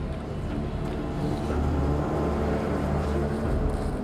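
Steady low rumble of ship's machinery on a vessel's work deck, with a constant hum of several tones above it.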